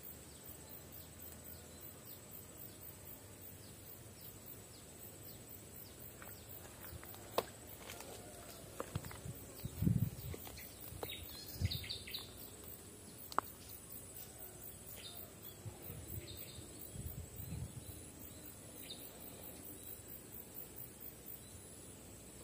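Faint outdoor ambience with a steady high-pitched insect drone, broken by a few sharp clicks and soft low bumps from about the middle on.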